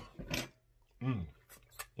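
Wet lip smacks and a few short mouth clicks from eating neck bone meat, with a moaned "oh" about a second in.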